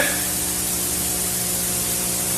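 Steady, even hiss of background recording noise, with faint steady low tones beneath it.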